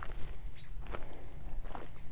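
Footsteps on a gravel path: a few slow walking steps, each a short crunch.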